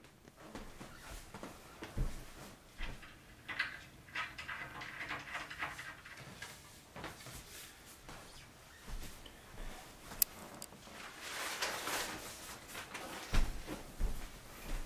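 Wooden changing-table parts being handled and fitted during assembly: scattered knocks and light thumps with rustling, and one sharp click about ten seconds in.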